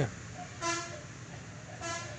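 Two short toots of a vehicle horn, one held a little longer about half a second in and a brief one near the end.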